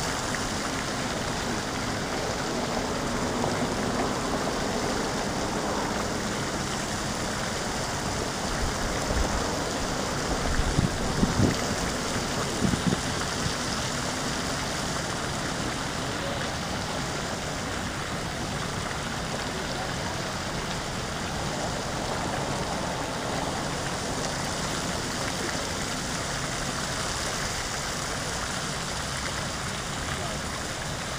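Steady rushing splash of a pond's spray fountain. A few low thumps and rumbles come about ten to thirteen seconds in.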